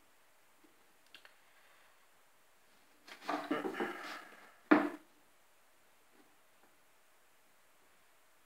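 A cord being pulled and knotted tightly around a rotary telephone's handset: about a second and a half of rubbing and rustling about three seconds in, ending in one sharp knock.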